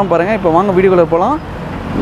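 A man talking, with steady street traffic noise behind him; his talk pauses about two-thirds of the way through, leaving the traffic noise.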